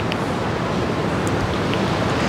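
Steady outdoor background rush of wind and distant city noise, with no distinct event standing out.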